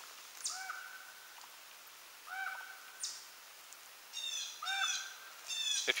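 Woodland birds calling. One bird gives a short call that rises and then levels off, three times about two seconds apart, while other birds add high, thin chirps.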